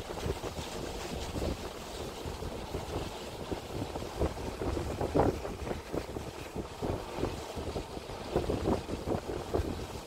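Gusty wind buffeting the microphone, an uneven low rumble with stronger gusts around five seconds in and again near the end.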